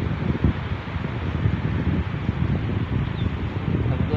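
Wind blowing across the microphone: a steady, unevenly fluttering low rushing noise.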